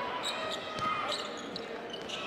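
Basketball game sound in an arena: a ball dribbling on the hardwood court over a steady murmur of crowd voices.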